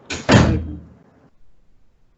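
A sudden loud bang about a third of a second in, just after a softer knock, dying away within about half a second.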